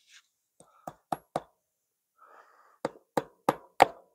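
Hammer driving 1½-inch fence staples into a wooden corner post to fasten woven-wire field fence. There are three sharp blows about a second in, then four more in quicker succession near the end.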